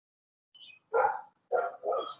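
A dog barks three times in quick succession, starting about a second in, after a brief higher yip.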